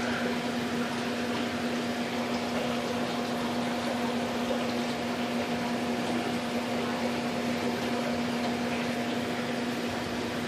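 A fan-driven machine running in a small room: a steady hum at a constant pitch under an even hiss.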